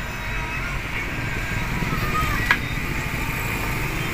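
Steady low background rumble with a single sharp click about two and a half seconds in.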